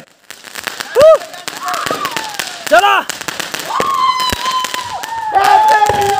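Fireworks crackling with many sharp pops while sparks shower down, with two short shouts from the people around. From about four seconds in, a long whistling tone sounds and slowly falls in pitch.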